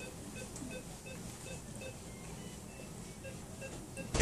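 Rapid electronic beeping, about three short beeps a second, typical of a bedside patient monitor; the beep pitch drops for a moment a little past halfway, then comes back higher. A steady low hum of room equipment lies underneath.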